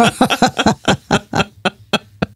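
People laughing in a run of quick bursts, about four to five a second, tailing off near the end.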